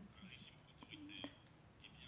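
Near silence: a pause between spoken sentences, with only faint, brief traces of a voice.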